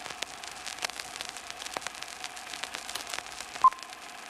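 Old-film countdown leader soundtrack: steady crackling hiss with scattered clicks, and a single short beep shortly before the end, the countdown's sync pop.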